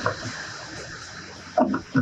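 Scraping, hissing friction of a PVC pipe adapter with Teflon-taped threads being turned by gloved hands into a plastic tank's threaded fill opening, fading over the first second and a half. A brief vocal sound comes near the end.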